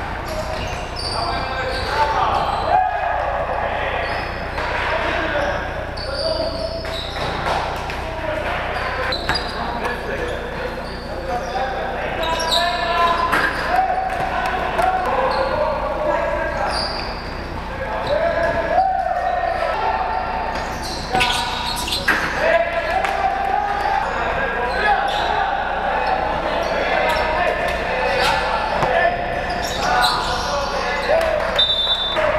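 Basketball game in a large gym: the ball bouncing on the wooden floor amid players' voices calling out, echoing in the hall.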